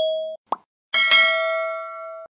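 Subscribe-button animation sound effects: a brief steady tone, a quick pop about half a second in, then a bell ding about a second in that rings on and slowly fades.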